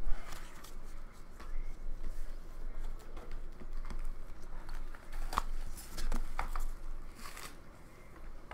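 A stack of trading cards and a cardboard hobby box being handled on a wooden table: a thump at the start, then scattered taps, clicks and short rustles of card stock and cardboard.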